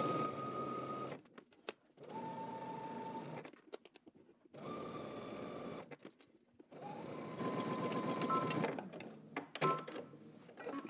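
Electric sewing machine stitching a seam through lightweight woven fabric, its motor whining steadily. It runs in four short stretches with brief stops between them.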